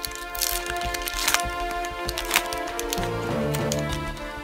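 Background music with sustained tones, over the crinkle and tear of a foil trading-card booster pack being ripped open, with sharp crackles about a second apart.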